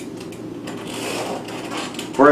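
Steady low room hum, with a soft papery scratch or rustle from the desk lasting about a second, starting a little after the first half-second.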